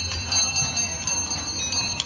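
Bells ringing with high tones that are struck again and again, over a low background hubbub.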